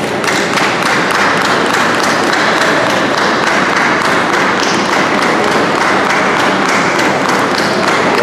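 Audience applauding, the clapping breaking out suddenly and keeping up as a dense patter.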